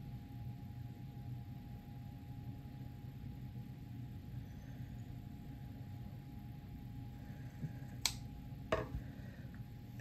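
Kitchen scissors snipping the leathery shell of a ball python egg over a steady low room hum, with two sharp clicks from the scissors near the end, under a second apart.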